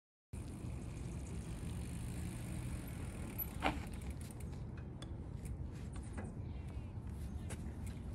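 Steady low outdoor rumble starting just after a brief silence, with scattered small clicks and knocks from handling the bags on a loaded bikepacking bike; the sharpest click comes about halfway through.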